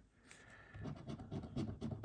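Scratch-off lottery ticket being scratched: after a brief silence, a faint, rapid run of short scrapes begins just under a second in as the coating is rubbed off a number spot.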